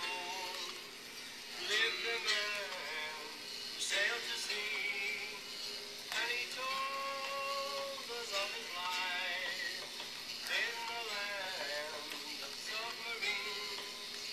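A song with singing played from an iPod through the Npower SpongeBob speaker dock's small eyeball speakers, sounding thin with little bass.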